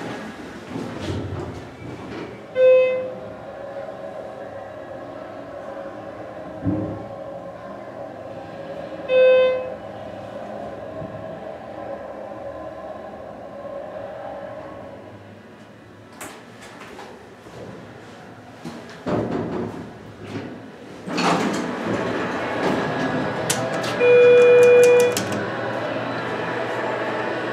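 Hydraulic glass passenger elevator in motion: a steady mechanical hum from the pump and car while it travels, with two short electronic beeps early on. The hum drops away after about fifteen seconds, followed by a few clicks and the door machinery. Near the end a longer electronic tone sounds, about a second long.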